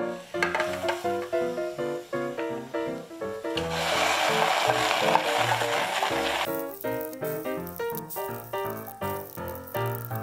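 Background music of steady, stepping notes, with a sizzle of onions frying in butter in a pot. The sizzle is loudest for about three seconds from a little past three seconds in.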